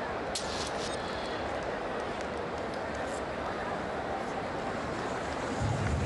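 Steady crowd noise at a cricket ground, growing louder just before the end.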